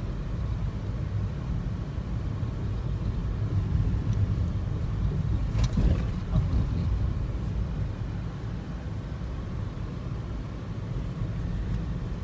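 Steady low rumble of a car's engine and tyres heard from inside the cabin while driving along a road, with a short click about halfway through.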